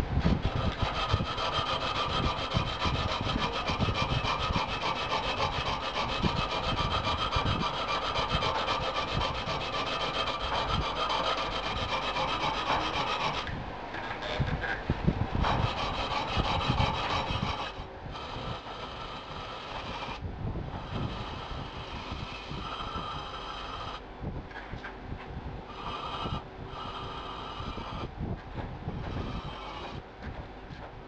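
Hand file scraping back and forth on a steel knife blank held in a vise, shaping the handle's finger grooves. It works steadily for the first half, then goes on more softly in shorter spells with brief pauses.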